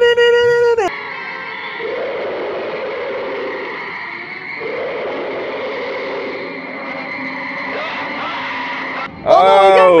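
A man's exclaiming voice for about the first second. Then an old monster-film soundtrack takes over: a steady hiss with a thin, high, level tone and a few low swells, as a giant scorpion attacks at a telephone line at night.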